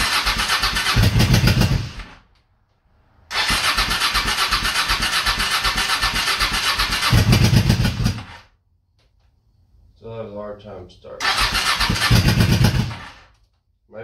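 1984 Honda Shadow 700 V-twin cranked on its electric starter for a cold start, in three bursts of about two, five and two seconds, each cutting off abruptly.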